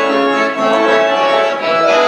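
Accordion playing a folk melody in sustained, overlapping notes.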